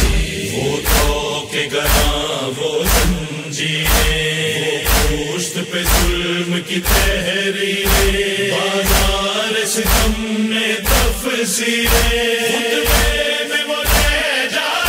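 Male chorus chanting a noha (Urdu lament) in sustained, drawn-out lines, over a steady beat of chest-beating (matam) at about two strikes a second.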